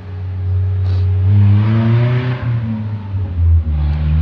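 A motor vehicle's engine running nearby and speeding up, its sound swelling to a peak about two seconds in with a rising engine note, then easing off, over a steady low hum.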